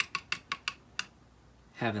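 Plastic ratchet headband of a DEKO auto-darkening welding helmet being adjusted: about six sharp clicks over the first second as it steps through its detents, the clicks that hold the headband tight so it doesn't loosen while worn.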